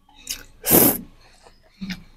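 Close-miked slurp as a long strip of food is sucked in through the lips: one short, sharp rush of air just under a second in, with smaller mouth noises before and after.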